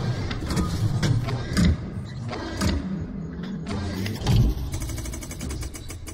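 Sound effects for a mechanical logo animation: metallic clanks, whirs and whooshes over a low, engine-like rumble, with a string of sharp hits. The loudest come about a second and a half in and again past four seconds in. It fades out at the end.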